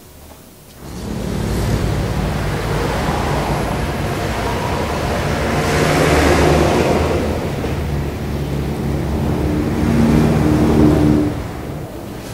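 Road traffic: motor vehicles passing with engine hum and tyre noise, starting abruptly about a second in and swelling twice, once midway and once near the end, before falling away.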